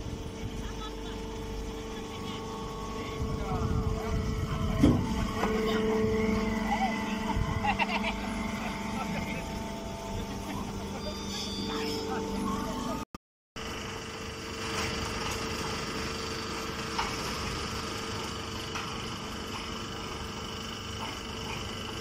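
Alfalfa baling machinery running with a steady hum, people's voices over it in the first half and a sharp knock about five seconds in. The sound cuts out for a moment just after the middle, then a steady machine hum carries on.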